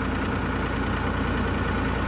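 Tractor engine idling steadily.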